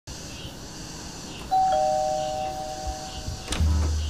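A two-note chime in a doorbell-like ding-dong: a high note, then a lower one a moment later, both ringing on together for about two seconds. Near the end a click is followed by a deep bass note.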